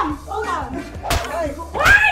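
Pillows striking people in a pillow fight: two sharp hits, about a second in and near the end, among excited voices and shrieks.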